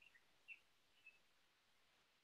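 Near silence with a few faint, short, high chirps of a small bird.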